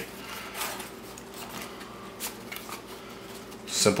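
A cardboard mailer box and the paper-wrapped package inside it being handled and slid apart, making light scrapes, rustles and a few soft taps.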